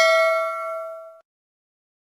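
Notification-bell ding sound effect ringing out: several steady bell tones fade and die away a little over a second in.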